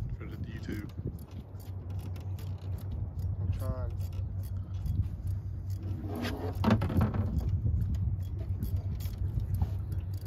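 Spinning reel being cranked during a lure retrieve, giving light metallic clicking over a steady low rumble. Brief voices come in twice around the middle.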